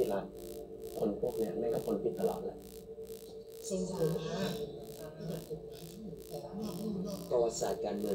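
Speech in Thai over background music that has a held tone and a steady pulse of about four beats a second.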